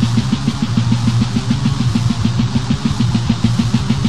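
Death metal band playing an instrumental passage: a fast, even drumbeat of about eight hits a second over a held low guitar and bass note, with no vocals.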